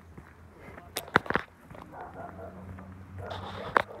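Footsteps on a dirt track, with a cluster of sharp clicks about a second in and another near the end.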